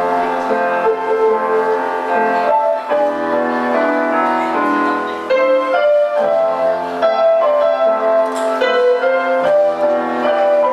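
Electronic keyboards with a piano sound playing a melody over chords, each note held about half a second to a second before the next.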